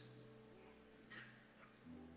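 Near silence: room tone with a faint held low tone, and one soft brief sound a little past one second in.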